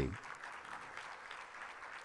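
Faint, steady applause from an audience.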